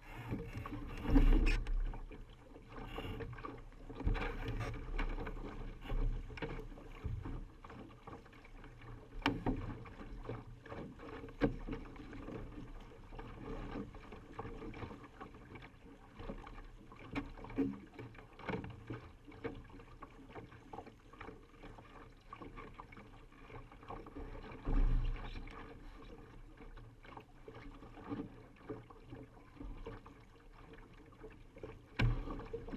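Water slapping and washing against a Laser dinghy's hull under sail, heard through the deck with irregular knocks and thumps. Two heavier thumps stand out, one about a second in and another later.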